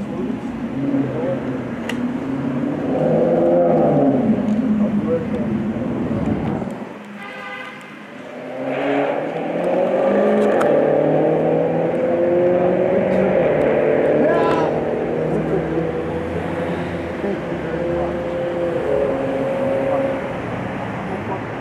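Indistinct voices over a car engine whose note glides slowly up and down, with a brief drop in loudness about seven seconds in.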